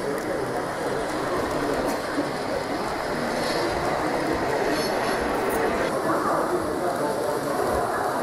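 Z-scale model train running along the layout track, a steady sound over the even murmur of the exhibition hall.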